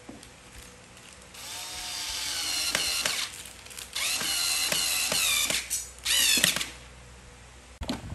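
Small cordless electric screwdriver driving screws into a particleboard furniture panel, its motor whining in three runs. The first starts about a second and a half in and rises in pitch as it spins up. A second comes about four seconds in, and a short burst follows near six seconds.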